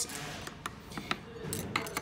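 A few light metallic clicks and a brief scrape as a hex screwdriver is set into the bolt heads of the aluminium Z-axis rail assembly.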